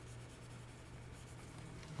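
Faint scratching of a stylus drawing on a tablet surface, over a low steady hum.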